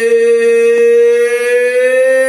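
A man singing unaccompanied, holding one long note, its pitch steady and then rising slightly near the end.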